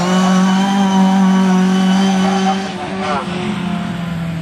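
Autograss race car engine running hard at high, steady revs as the car passes, the note fading about three quarters of the way through.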